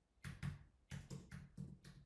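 Faint keystrokes on a computer keyboard as a number is typed in: about eight quick, separate taps over a second and a half.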